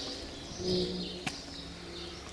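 A passing boat's engine running with a steady low hum, with birds calling over it and a single sharp click a little past halfway.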